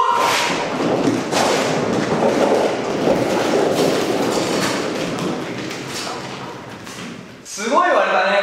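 Hundreds of small rubber super balls raining down and bouncing on a hard floor: a dense clatter of rapid small impacts that thins out and fades away over about seven seconds.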